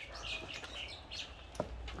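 Small birds chirping faintly in the background, with a short click about one and a half seconds in.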